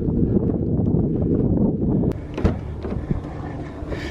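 Wind rumbling on the camera microphone while walking outdoors, a dull low noise with a couple of brief knocks about two seconds in.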